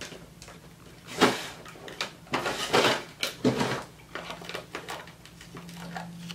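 Handling noises: a few short rustles and knocks as paper and plastic packaging are moved about, about a second in and again between two and a half and three and a half seconds.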